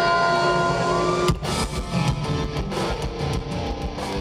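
Heavy metal band playing live, with electric guitars, bass and drums: held notes ring for about a second, then the full band kicks in with hard, rhythmic drum hits and distorted guitar.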